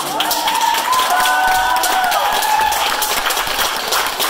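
Small audience clapping steadily, with voices cheering in long held whoops over the applause for the first two and a half seconds.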